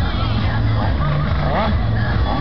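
Loudspeaker announcer and music over crowd chatter, with a racing scooter's engine running at the drag-strip start line.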